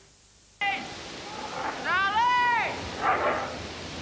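A cat meowing: a short meow about half a second in, then a longer meow about two seconds in that rises and falls in pitch.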